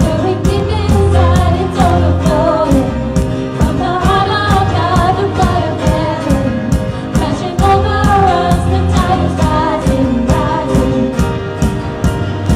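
A worship band playing a song: a woman singing the melody over piano, keyboard and drums, with a steady beat of about two drum strikes a second.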